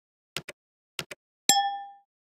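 Subscribe-button animation sound effects: two quick pairs of mouse clicks, then a single bright bell ding that rings on and fades out within half a second.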